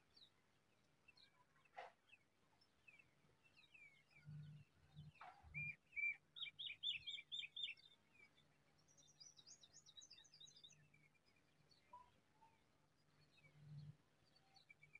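Faint birdsong: small birds chirping, with a run of about five quick, loud notes around six seconds in and a higher, faster series of notes near ten seconds.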